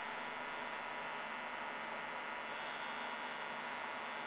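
Steady electrical hum with a faint hiss, holding level with no changes or distinct events.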